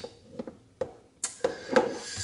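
An AeroPress coffee maker being handled: two light plastic clicks as the coffee is stirred in its chamber and a piece is fitted on top, then a hissing, rustling noise in the second half.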